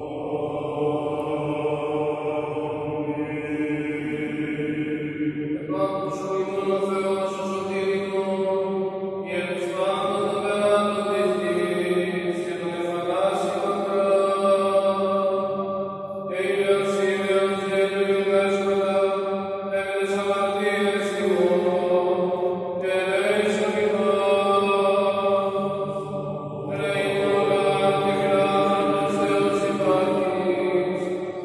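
Greek Orthodox Byzantine chant by male voices: long, held melodic phrases over a steady low drone note, with short breaks between phrases.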